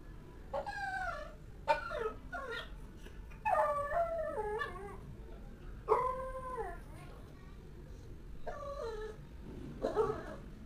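A dog whining and howling: a string of about six drawn-out calls, each rising and falling in pitch, with short gaps between them.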